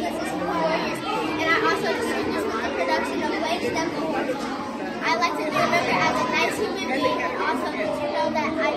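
Many people talking at once in a large hall: a steady babble of overlapping children's and adults' voices, with no single voice standing out.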